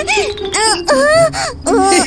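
Wordless cartoon character voices: a string of short, rising-and-falling moaning 'ooh' sounds, over background music.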